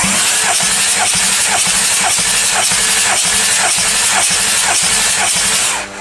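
Audi 3.0 TDI V6 diesel engine being cranked on its starter motor without firing, for a compression test of the third cylinder: a steady loud rush with a regular pulse of compression strokes, starting abruptly and stopping just before the end. The cylinder holds 26 kg/cm² of compression, a healthy reading matching the others.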